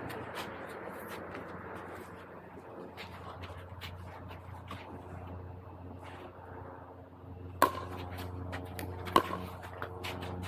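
A paddle striking a plastic pickleball twice, two sharp hollow pops about a second and a half apart near the end, over a steady low hum, with a few much fainter hits earlier on.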